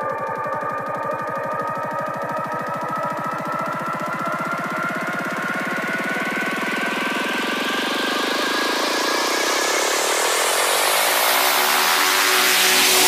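Psytrance build-up: held synthesizer tones over a fast pulsing synth with the kick drum and deep bass dropped out. A noise sweep rises steadily in pitch and loudness through the second half, building toward the drop.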